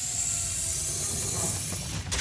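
A steady, loud hissing noise, strongest in the high range with a low rumble under it, that breaks off abruptly near the end.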